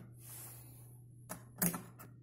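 Plastic clicks and clacks of a cassette being handled in the open cassette door of a Trio (Kenwood) KX-800 cassette deck: a brief soft rustle, then two sharp clicks, the louder one about one and a half seconds in.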